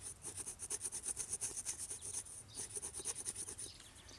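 A ground slate blade scraping bark off a hemlock stick in quick, even strokes, about eight a second, with a brief pause about two and a half seconds in.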